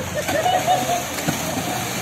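Swimming-pool water splashing and sloshing as people move and play in it, with voices in the background.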